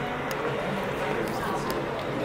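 Crowd chatter: many people talking at once in a steady murmur, with a few faint clicks.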